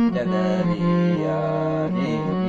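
Sharma harmonium's reeds playing a bhajan melody, stepping from held note to held note, with a man's sung voice wavering over it.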